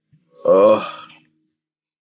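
A man's loud, deep burp, one voiced belch lasting under a second, starting about half a second in.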